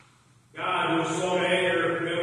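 Near silence for about half a second, then sustained, chant-like music sets in suddenly, with several pitches held steadily together.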